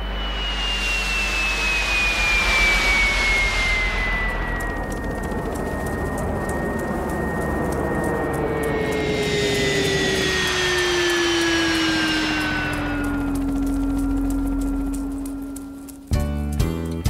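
Jet airplane sound effect: two fly-bys, each a swell of engine rush with a high turbine whine that falls slowly in pitch as the plane passes.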